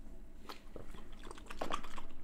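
Quiet mouth sounds of people tasting a soda: a few small lip smacks and mouth clicks, one about half a second in and a few more near the end.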